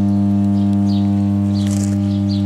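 Oil-filled power transformer humming steadily: a loud, unchanging low electrical hum with a few evenly spaced overtones.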